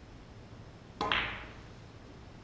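Snooker cue tip striking the cue ball about a second in, followed almost at once by a louder sharp click as the cue ball hits an object ball, ringing briefly.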